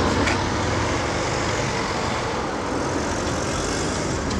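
Small car driving past close by: steady engine and tyre noise on asphalt, with other road traffic behind it.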